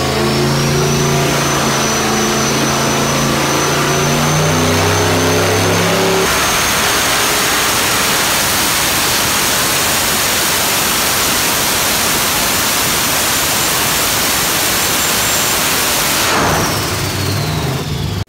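Turbocharged 4.8-litre LS V8 running on an engine dyno during a power pull, with a high turbo whine that slowly climbs. About six seconds in, the engine sound turns into a dense, even rush. Near the end the engine backs off and the turbo whine falls away.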